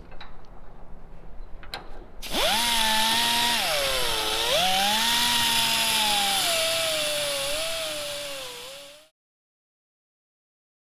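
Air-powered cut-off tool spinning up about two seconds in with a quickly rising whine, then cutting through metal locking hardware on a shipping container door. Its pitch sags and recovers as the wheel bites, over a steady hiss, and the sound stops abruptly near the end. A few light clicks come before it starts.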